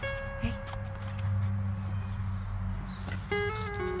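Acoustic guitar being finger-picked: a note rings at the start, then a quick run of single notes climbs and falls near the end.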